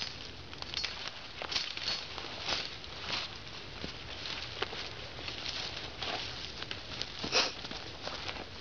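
Footsteps crunching through dry leaf litter and dead brush, with twigs and stems rustling and snapping at an irregular pace and a louder crunch near the end.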